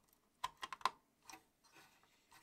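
A few faint, short clicks of an IC's pins being pressed into a socket: a GAL PLA replacement on its adapter board being seated in a Commodore 64's PLA socket. Four clicks come close together in the first second, and one more follows a little later.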